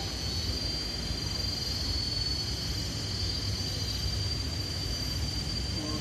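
Steady outdoor background noise: a low continuous rumble with a thin, unbroken high-pitched whine over it.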